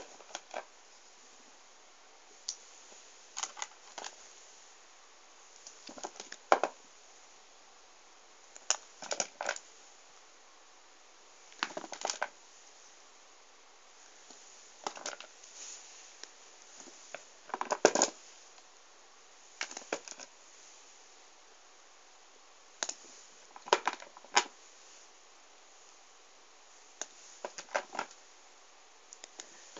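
Small novelty erasers being handled and set down, knocking together in short clusters of light clicks and taps every few seconds.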